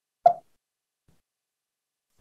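Near silence, broken by one short soft pop about a quarter of a second in.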